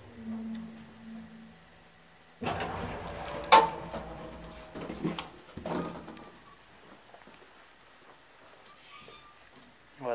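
Small KONE traction elevator with a short low hum as it stops at the floor. About two and a half seconds in its doors open with a rattle and a sharp metallic clunk, followed by a couple of knocks as the hinged landing door is pushed open.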